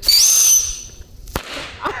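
A whistling firework goes off: a shrill whistle that leaps up in pitch and holds for about half a second over a hiss, then fades. A single sharp bang follows a little over a second in.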